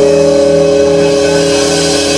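Live blues band's closing chord ringing out: an electric guitar holds one steady chord for the full two seconds while the bass underneath falls away as it begins.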